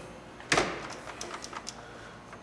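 A heavy sheet-metal hinged hood panel being folded open over the engine lands with one sharp clunk about half a second in, followed by several light metallic clicks and rattles as it settles.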